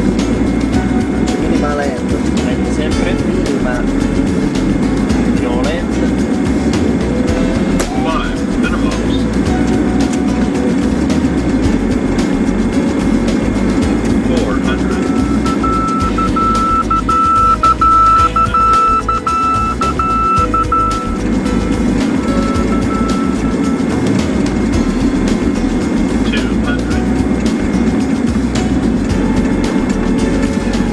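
Steady cockpit noise of an airliner on final approach: a loud drone of engines and airflow. About halfway through, a high steady tone sounds for about six seconds, then briefly once more.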